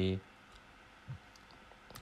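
A man's voice finishes a short word, then a pause of room quiet broken by a few faint small clicks, with a sharper click just before he speaks again.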